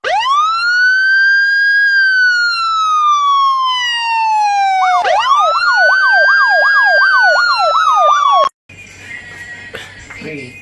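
A siren: one wail that rises quickly and then slowly falls, followed by a fast warbling yelp that cuts off suddenly about eight and a half seconds in.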